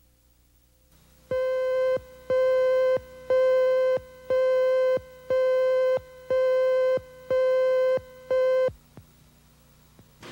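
Eight identical mid-pitched electronic beeps, about one a second, each lasting most of a second: the countdown beeps on a TV news videotape leader under a station slate card. They begin about a second in and stop near the end.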